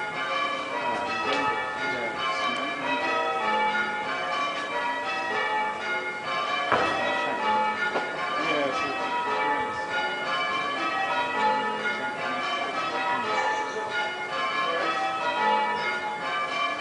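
Old church bells, the earliest cast about 1477, rung full circle in call changes, heard from outside the tower: a continuous, even stream of overlapping bell strokes. One bell, the 4th, is clappering oddly.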